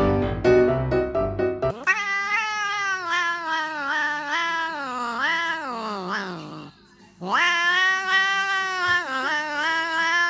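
Tabby cat yowling in two long, drawn-out calls. The first lasts about five seconds, wavering and sliding down in pitch at its end. The second comes after a short pause and is held steady for about three seconds. Piano music plays briefly at the start.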